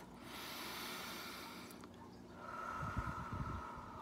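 A woman taking one slow, deep breath: drawn in for about two seconds, then let out over the next two.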